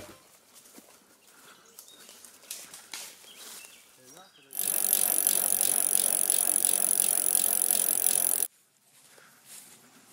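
Bicycles riding past on a paved path: a steady hiss of tyres and drivetrain for about four seconds, cutting in abruptly about halfway through and cutting off just as abruptly near the end. Before it there are only faint, scattered sounds.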